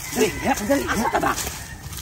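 A man's voice speaking in quick phrases that rise and fall in pitch, over light outdoor background noise.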